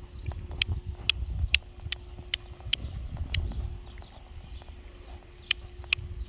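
Bay riding pony trotting on a sand arena: dull hoofbeats with sharp clicks in an even rhythm, about two a second.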